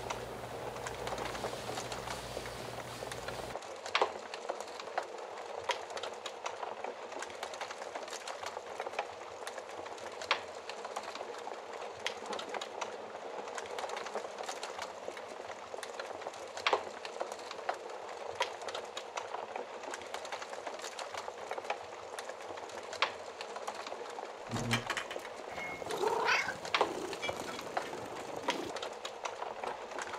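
Fire crackling steadily, a soft hiss studded with frequent sharp pops and snaps. A short animal call with a rising and falling pitch comes a few seconds before the end.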